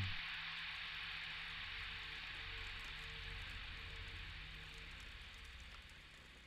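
A steady hiss of ambient background sound with a faint low drone underneath, slowly fading out.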